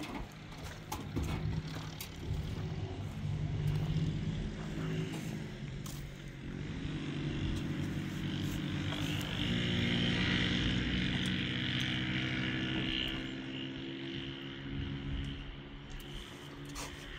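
An engine running steadily, with scattered knocks and taps of masonry work. In the middle there is a rough scraping, the sound of mortar being mixed with a shovel in a wheelbarrow.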